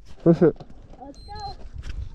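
Mostly speech: a short, loud spoken word early on, then a second, softer bit of talk about a second later, over a faint low rumble.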